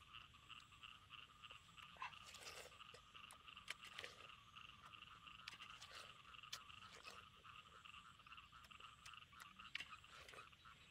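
Faint wet crunches and clicks of watermelon being bitten and chewed, scattered through, over a steady, rapidly pulsing chorus of calling animals.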